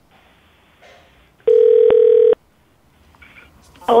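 Telephone ringback tone heard through the handset: one steady, buzzy ring about a second long, partway in, while the call to the sister has not yet been answered.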